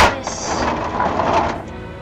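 A sharp plastic click, then about a second and a half of hard plastic parts rattling and scraping as a hinged section of a Jurassic Park: The Lost World Mobile Command Center toy trailer is folded back in.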